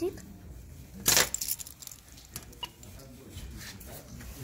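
Keys and a plastic key fob knocking and jangling against a door intercom's key reader, with one short clatter about a second in and a few light clicks after.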